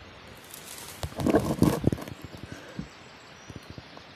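Dry leaf litter and twigs on the forest floor crackling and rustling, a dense burst of crackles about a second in, then a few scattered light clicks.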